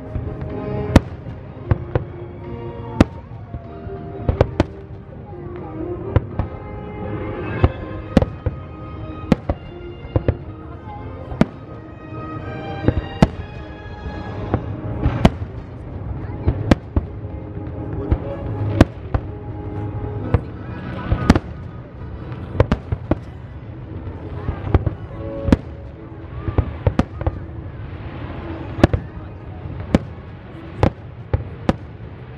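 Aerial firework shells bursting, a steady run of sharp bangs about once or twice a second, over music playing underneath.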